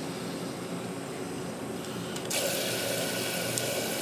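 Water running from a kitchen tap into a tall glass vase of rice and oils, filling it to soak the rice. About two seconds in the flow gets stronger and the hiss turns sharper and louder.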